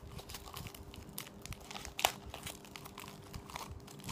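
Plastic packaging crinkling and ticking as it is handled, with one sharper click about two seconds in.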